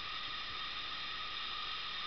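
Steady hiss of room tone and recording noise, with faint steady high tones running through it and no other sound.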